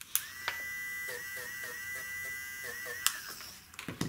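Battery-powered electric eraser running for about three seconds, a steady high whine that dips in pitch a few times as the tip is pressed to the paper to rub out coloured pencil that went past the line. It switches on and off with a click.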